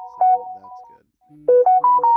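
A phone ringtone: a short electronic melody of clean, rising notes that stops about a second in, then starts over from the beginning after a brief pause.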